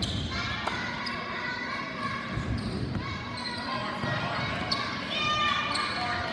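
A basketball being dribbled and bouncing on a hardwood gym floor, with indistinct voices from players and spectators around the court.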